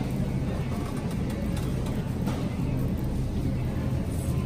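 Shopping cart rolling across a store floor, giving a steady low rumble with a few light clicks and rattles.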